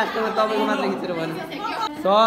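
Several people chattering, their voices overlapping.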